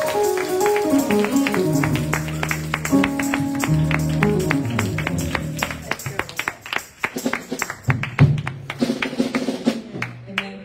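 Live church band playing on without singing: a drum kit keeps a quick steady beat under sustained keyboard chords. The chords fade out a little past halfway, leaving mostly the drums, and the playing thins out toward the end.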